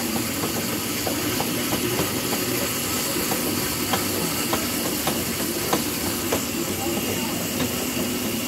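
Hand-cranked arm ergometers running, a steady rushing noise with a few light irregular clicks, while people talk in the background.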